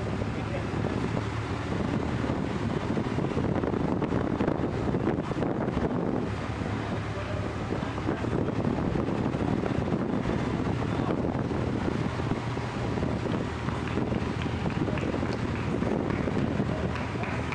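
Wind buffeting the microphone of a moving camera, over a steady low engine hum.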